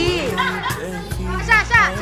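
Background music with steady low notes under excited shouting and laughter from adults and children; the loudest high-pitched shrieks come near the end.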